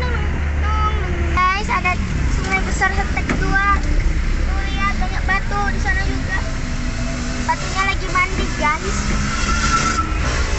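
Steady low engine and road rumble heard from inside the cab of a large moving vehicle, with indistinct voices over it.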